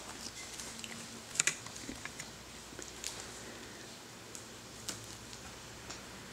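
A few light, scattered clicks and taps on a plastic baby-seat tray as a baby's hands handle things on it, the sharpest about a second and a half in.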